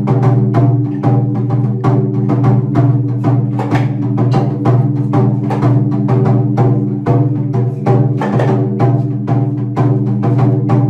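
Taiko drum beaten in a quick, even rhythm as accompaniment to an Onidaiko demon-drum dance, over a steady low sustained drone.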